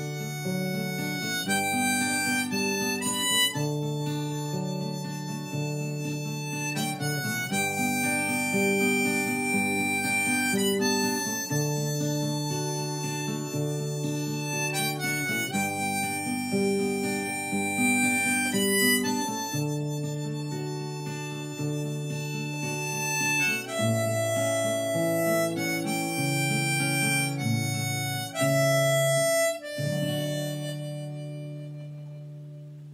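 A harmonica playing a melody of long held notes over acoustic guitar accompaniment.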